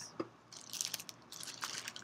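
A plastic shopping bag crinkling and rustling in quick, irregular crackles as a hand rummages inside it, starting about half a second in.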